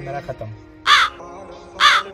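A crow cawing twice, about a second apart, each caw short and loud, over quiet background music.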